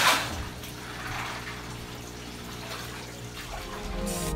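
Aquarium filter running: a steady trickle of water with a faint low pump hum. A short bump sounds at the very start.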